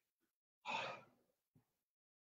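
One short, hard exhale of effort from a person straining through a set of narrow push-ups, about half a second in.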